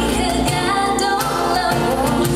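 Live pop music from a small band with keyboard and drums, with a woman singing a sustained melody.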